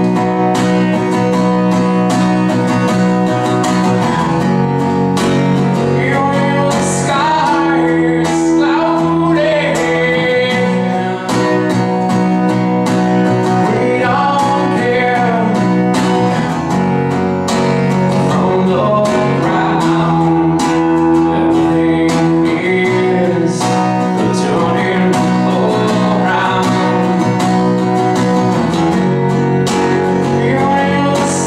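A man singing while strumming an acoustic guitar, a solo live performance of a song.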